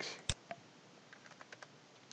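Computer keyboard keystrokes: one sharp click about a third of a second in, then a few faint taps.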